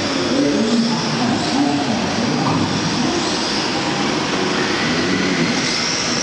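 Several rear-wheel-drive radio-controlled drift cars running together in a tandem drift. Their electric motors whine and shift in pitch as they speed up and slow, over a steady hiss.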